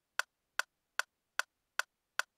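A metronome clicking steadily at about two and a half clicks a second (around 150 beats per minute), with no piano playing.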